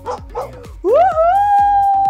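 A small dog gives a few short yips, then a woman lets out a long celebratory 'uhul!' whoop that sweeps up and holds one note. Background music with a steady beat plays under it.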